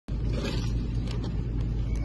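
A motor vehicle running with a steady low rumble, with a few faint clicks over it.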